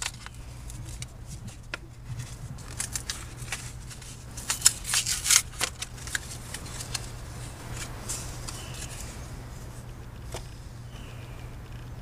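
Crinkling and crackling of a card-and-plastic package being opened and handled, with small battery terminal protector washers picked out of it: a scattered run of small crackles and clicks, loudest in a cluster around the middle.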